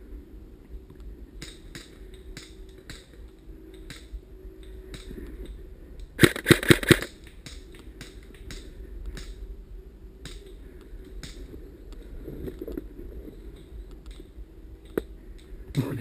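Airsoft replica gunfire in woodland: scattered sharp clicks of shots and BB strikes, with one loud short burst of four or five rapid shots about six seconds in.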